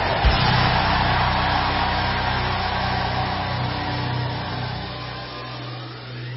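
A congregation cheering and shouting in a large hall in response to a prayer, a loud roar that slowly dies down, over a steady low musical note held underneath.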